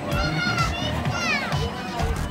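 A child's high-pitched voice calling out, first a held note and then a falling cry, over background music.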